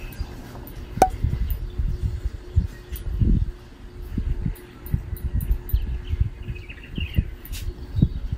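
A few faint bird chirps over low, irregular rumbling and a faint steady hum.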